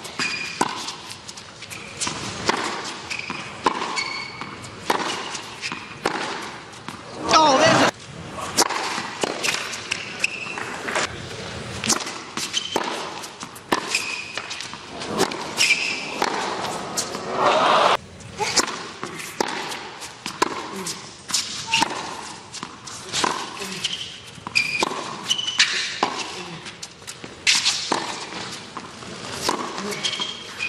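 Tennis rallies on a hard court: repeated sharp racket strikes and ball bounces, with short high squeaks between them and a louder vocal or crowd burst about seven seconds in and again near eighteen seconds.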